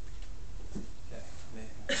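Faint, indistinct voices over a steady low room hum, with a man starting to laugh right at the end.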